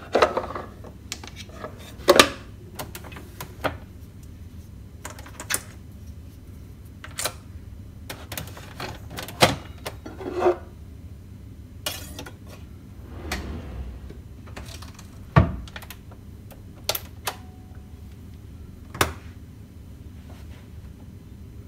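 Scattered sharp clicks and knocks from a ceramic cup, a wooden drawer and a Nespresso capsule coffee machine being handled, coming every second or two, the loudest a thump about fifteen seconds in.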